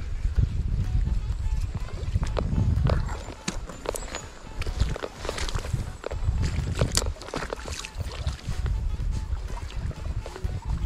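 Wind buffeting the microphone in uneven low gusts, with a run of sharp little clicks and ticks from about three to eight seconds in, from handling the fishing rod and spinning reel.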